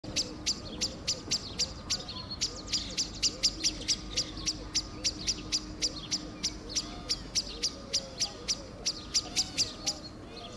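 Eurasian blackbird giving a rapid, regular series of sharp, high, clicking calls, about three to four a second: the blackbird's alarm call, which the recordist takes to be set off by her own presence.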